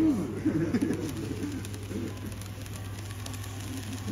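Scale model train running past on the track: a faint rumble with light clicking from the wheels over a steady low hum. Voices murmur in the background during the first second or so.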